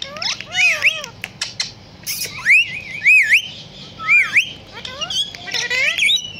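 Ringneck parakeets calling: a run of squawking whistles that rise and fall in pitch, with a few short sharp clicks in between. The loudest calls come between about two and four and a half seconds in.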